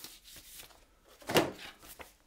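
Light handling noises of cardboard packaging and a printed card being taken from the box, with one short, sharp louder rustle or knock a little past halfway.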